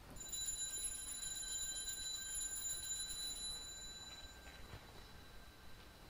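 Altar bells rung at the elevation of the chalice after the consecration, shaken in a quick shimmer of strikes that rings on and fades out about four seconds in.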